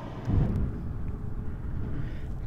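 Low, steady outdoor rumble, with a brief dull thump about half a second in.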